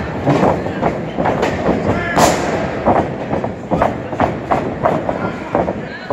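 Wrestling-ring impacts: repeated thuds and slaps of bodies on the canvas and on each other, with one sharp smack about two seconds in, over indistinct crowd shouting.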